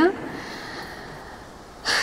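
A woman's speech trails off at the start, then comes a pause holding a soft breath close to her headset microphone. She starts speaking again just before the end.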